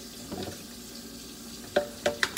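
Pineapple chunks tipped from a plastic tub into a blender jar, landing with a soft patter and then one sharp knock near the end, over a steady background hiss.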